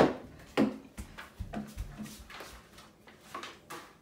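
A sharp knock as a plastic jug is set down on a wooden table, followed by a string of lighter, irregular knocks and footsteps.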